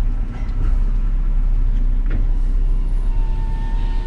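Car engine and tyre noise heard from inside the moving car, a steady low rumble as it drives slowly across a paved lot.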